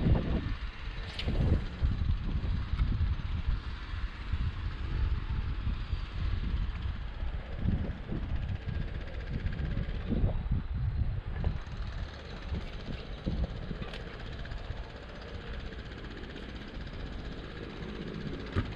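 Wind buffeting the microphone in gusts: a low rumble that rises and falls unevenly.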